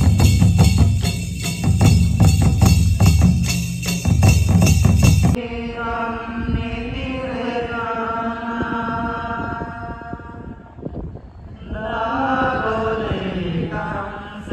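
Loud, fast drumming that cuts off abruptly about five seconds in, followed by voices chanting a prayer in long held notes, with a short pause before the chant picks up again near the end.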